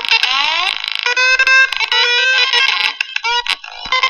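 Electronic soundtrack of an audiovisual art piece being played back: dense layered synthetic tones with sliding pitches, dipping briefly about three and a half seconds in.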